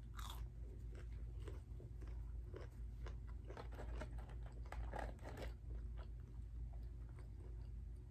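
Close-up chewing of crunchy battered onion rings: a run of small, irregular crunches, faint against a steady low hum.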